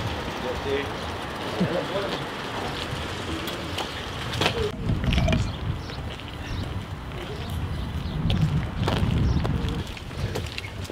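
Wind buffeting the microphone in low rumbling gusts, under faint, indistinct voices.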